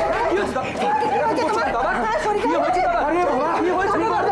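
Several people talking over one another at once, agitated overlapping voices.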